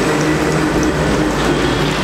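A loud, steady mechanical rattle over a low hum.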